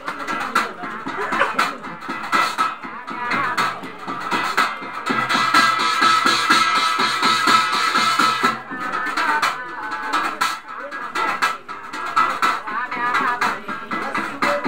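Live Garhwali jagar ritual music: fast, steady drumming with a voice singing over it.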